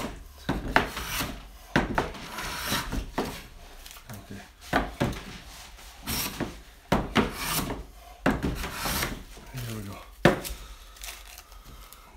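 Low-angle (bevel-up) jack plane taking repeated passes along figured maple, each stroke a rasping swish of the iron cutting a shaving, about half a dozen strokes with a few sharp knocks between them.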